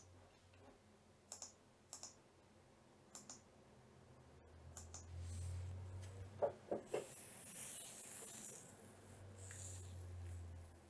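Faint computer keyboard and mouse clicks, single or in pairs, spaced a second or so apart. From about halfway a low hum and hiss rise, with three quick knocks near seven seconds.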